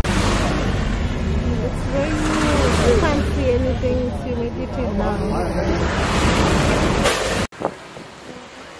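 Road noise heard from inside a moving car on a wet road: a steady rush of tyre hiss and wind, with indistinct voices over it. It cuts off suddenly near the end.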